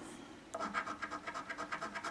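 A coin scratching the coating off a scratch-off lottery ticket in rapid, even back-and-forth strokes, starting about half a second in.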